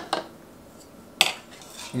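A single sharp clink of hard kitchen items being handled on a glass cooktop, a little over a second in, with a softer knock at the very start.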